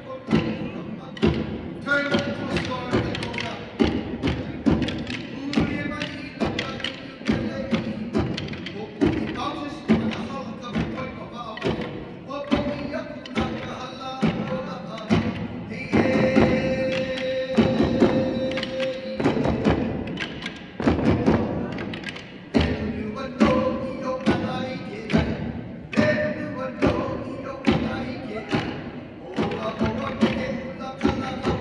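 Kāla'au, wooden hula sticks, struck together in a steady rhythm by a line of dancers, under a chanted mele.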